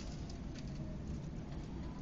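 Steady low rumbling outdoor background noise, with a few short high ticks or chirps in the first half.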